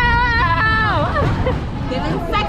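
A person's high voice holding a long, wavering note that slides down and breaks off about a second in, over crowd babble.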